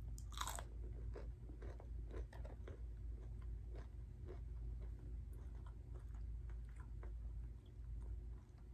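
Close-up mouth sounds of biting and chewing a crispy breaded fried chicken tender: one loud crunch about half a second in, then a run of smaller crunches as it is chewed.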